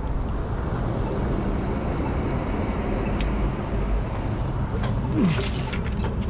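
A vehicle engine runs steadily close by as a continuous low rumble. About five seconds in there is a short hiss and a falling squeak.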